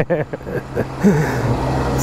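Car engine idling steadily with the hood open, running again after a jump start because its battery had gone flat.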